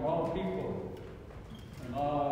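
A man's voice speaking, with a pause in the middle; the words are not made out.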